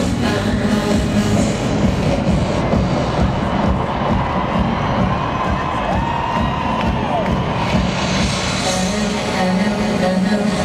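Live dance-pop music over a stadium sound system with a crowd cheering, recorded from among the audience.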